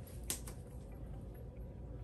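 Quiet room tone with a steady low hum and two small clicks about a third and half a second in, then a few fainter ticks, from hands handling a stretchy swimsuit top at its band.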